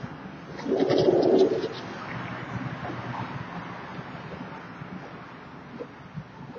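A bird calling outdoors: one low call lasting under a second about a second in, with a few faint high chirps, over steady background noise.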